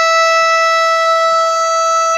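Basketball game horn sounding one long, steady, loud blast at a single pitch, the end-of-game signal.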